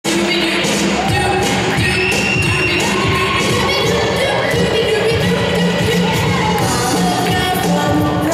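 Up-tempo jive music with a singer over a steady, driving beat.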